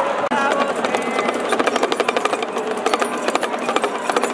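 Small hand-held hourglass drum (damaru) rattled in fast, even strokes, about ten a second, starting about half a second in.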